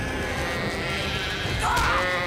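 Cartoon flock of sheep bleating as they stampede, over a steady low rumble of running hooves; the bleats grow louder near the end.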